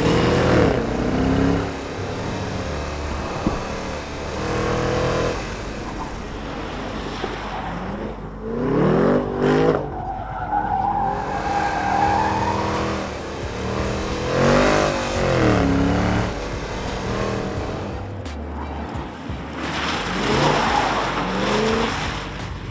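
Holden Commodore SS-V Redline's 6.2-litre V8 revving up and backing off over and over as the car is thrown through a slalom, the engine note rising and falling in sweeps every few seconds, with tyres squealing at times.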